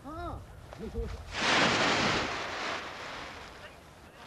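Paraglider canopy's nylon fabric rustling in a loud whoosh as the wing is pulled up off the grass and fills with air, starting about a second and a half in and fading over the next second or two.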